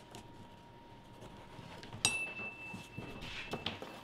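Faint scraping of a head knife finishing a cut through thick vegetable-tanned leather. About halfway through comes a sharp metal clink that rings on as one high tone for about a second and a half, followed by the rustle of the stiff leather hide being lifted and handled.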